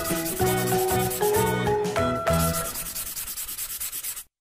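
Black felt-tip marker rubbing and scratching across paper in quick, uneven strokes as it inks an outline. Light background music with a plucked melody and bass plays along and fades out a little over halfway through.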